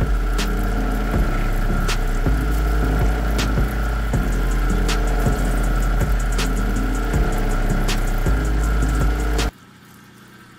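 Background music over a lapidary cabbing machine running wet as an opal is ground on its wheel. The sound cuts off suddenly near the end.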